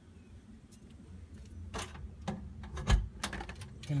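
Scattered clicks and knocks of movement and handling while walking with a phone, with one louder thump about three seconds in.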